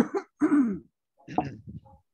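A man clearing his throat and coughing in three short bursts, the last one rough and rasping.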